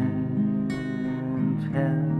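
Acoustic guitar strumming sustained chords with no singing, with a new strum about a third of the way in and a chord change near the end.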